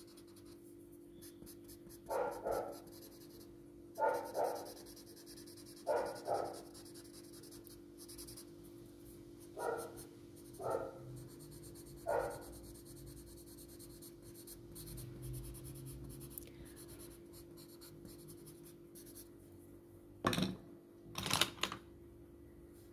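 A paper stump rubbing graphite powder into drawing paper in short strokes, often in quick back-and-forth pairs, with a pause of several seconds before two more strokes near the end. A faint steady hum runs underneath.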